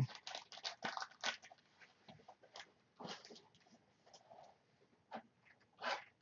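Faint clicks and light rustles from a trading card being handled and put down, a quick run of them at first and then a few scattered ticks.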